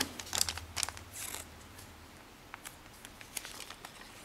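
A square sheet of origami paper being creased and handled, with crisp rustles and clicks for about the first second and a half, then only a few faint ticks.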